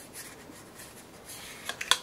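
Faint rubbing and handling noise of a cleaning cloth on an H&K P30L pistol as it is wiped down, with a couple of small clicks near the end.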